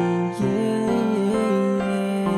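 Instrumental backing music of an Indonesian rap love song, with no vocal line: sustained chords that change about half a second in and again near the end.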